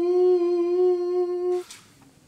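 A man humming one long, steady held note that stops about a second and a half in, followed by a brief rustle.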